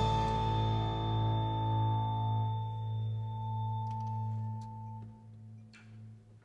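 The last chord of a percussion ensemble ringing out after the final hit: mallet keyboards and bass guitar sustaining several steady notes that slowly fade and die away about five seconds in, the low note pulsing gently. A few faint clicks near the end.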